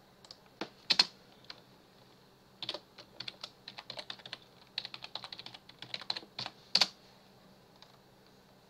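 Typing on a computer keyboard. A few scattered clicks come in the first second and a half, then a run of quick keystrokes lasts about four seconds, ending with one harder key press.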